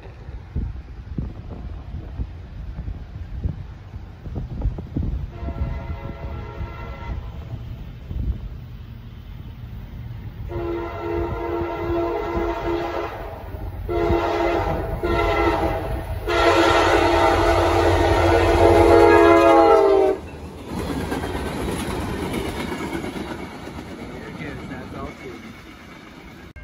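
Diesel freight locomotive's air horn sounding the grade-crossing signal: long, long, short, long, the last blast held about four seconds, with a fainter blast about five seconds in. Under it the locomotive's engine rumbles as it approaches, and once the horn stops the train rumbles past on the rails.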